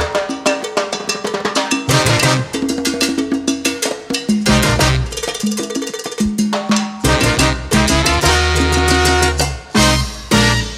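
Live salsa band playing an instrumental passage with no vocals. Timbales, congas, bongos, piano and bass carry it, with trumpets, trombones and baritone sax. The bass drops out for stretches while the percussion keeps going, then the full band comes back in strongly about seven seconds in, with short stops near the end.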